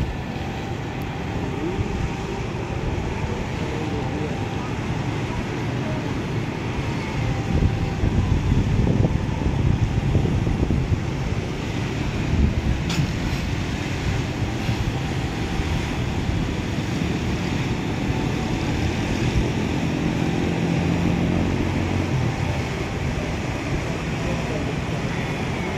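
Steady outdoor city ambience heard from high up: a low hum of road traffic from the avenues below, with indistinct voices of people nearby. The low rumble swells for a few seconds about a third of the way in.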